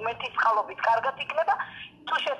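Speech only: a person talking, the voice thin and narrow, as over a phone.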